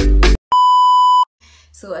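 Music cuts off, then a single steady electronic beep sounds for under a second. Low room hum follows, and a woman's voice begins near the end.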